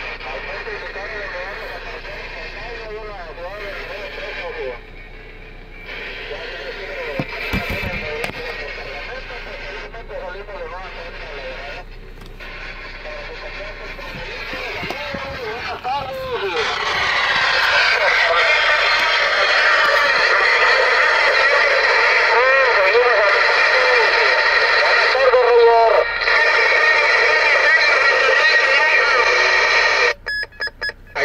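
Galaxy DX 33HML CB radio receiving distant stations: thin, garbled voices through static with wavering tones, getting much louder about two-thirds of the way in. The stations are from Puerto Rico, coming in strong.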